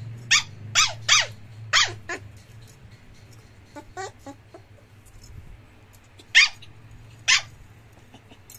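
A puppy giving short, high yips that drop sharply in pitch while play-fighting: four in quick succession in the first two seconds, a few softer ones midway, and two more near the end.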